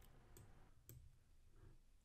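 Near silence: room tone with a couple of faint computer mouse clicks, about a third of a second in and again just before the one-second mark.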